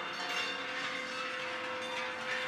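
Bells ringing, heard as a steady humming tone over a faint wash of background noise.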